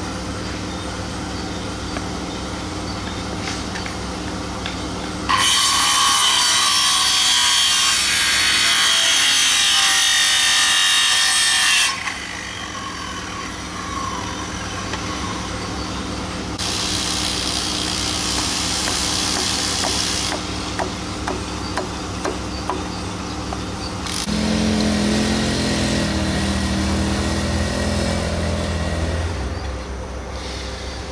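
Handheld circular saw cutting boards: a long, loud cut of about seven seconds, then a second, quieter cut a few seconds later, over a steady engine hum.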